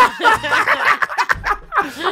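People laughing on close studio microphones, with a few spoken words mixed in.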